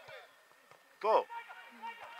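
A man shouts one short word of encouragement, "To!", about a second in; otherwise only faint background voices.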